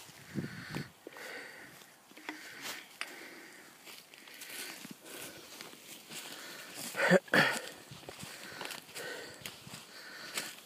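Footsteps on dry fallen leaves and twigs, irregular steps, with the loudest couple of steps about seven seconds in.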